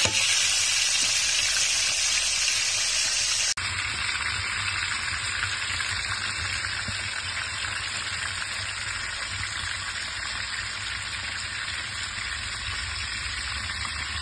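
Fish coated in corn flour pan-frying in hot oil over a wood fire: a steady sizzle. About three and a half seconds in, the sizzle turns slightly quieter and duller.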